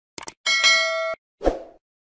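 Subscribe-button animation sound effect: a quick double mouse click, then a bright bell ding that rings for under a second and cuts off abruptly, followed by a short thump.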